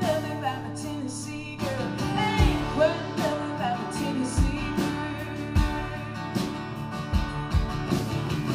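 Live country song played on several acoustic guitars: strummed chords with a bending lead melody line over them and occasional low thumps.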